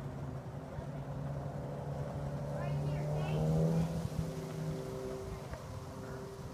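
A motor hums steadily, rising in pitch about three and a half seconds in and then settling again, with a child's voice heard briefly over it.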